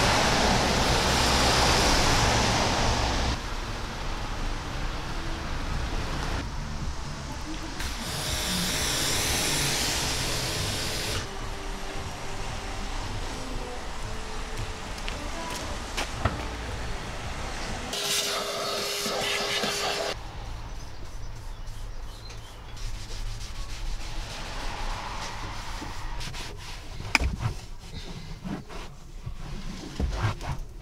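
A car driving past on a wet road with loud tyre hiss for the first few seconds. This is followed by a run of shorter, changing sounds that include bursts of hiss.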